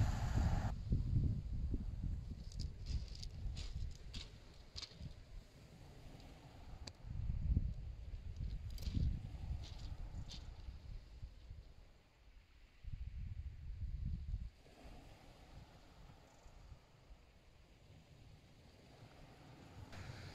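Wind rumbling unevenly on the microphone in gusts, with a few faint scattered clicks.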